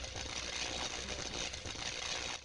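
Outro sound effect for an animated logo: a dense, steady rushing noise with a low rumble and a faint held tone beneath it, starting suddenly out of silence.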